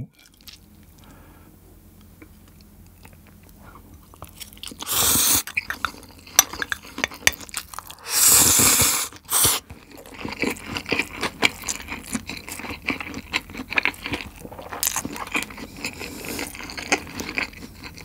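Close-miked eating of sauced boneless fried chicken with stir-fried ramen noodles: two loud mouthfuls about five and eight seconds in, then steady chewing with crunching clicks.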